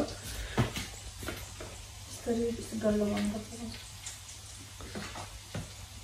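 A soft voice speaking briefly about two seconds in, with a few light clicks from handling in the kitchen over a low steady hum.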